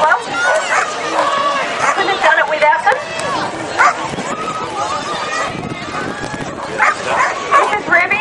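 Dogs barking during a flyball race, over a constant din of people's voices and calls.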